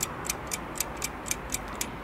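A clock ticking steadily at about four ticks a second, a timer sound effect marking a pause for the listener to answer. It stops just before the end.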